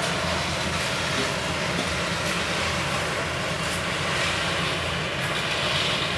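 Engine-driven drum concrete mixer running steadily on a building site, with the rasp of shovels scooping crushed stone and sand every second or so.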